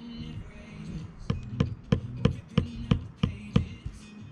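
Sandstone coping stone being tapped down onto its mortar bed with a hand tool: a run of about eight sharp taps, roughly three a second, over background music.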